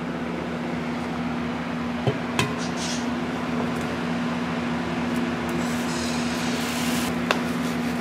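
Fat sizzling in a cast-iron skillet as an egg fries, over a steady low hum. There are two sharp knocks about two seconds in, and the sizzle grows brighter near the end.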